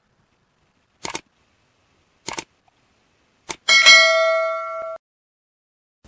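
Subscribe-reminder sound effect: three short clicks a little over a second apart, then a bell-like ding that rings for about a second and fades.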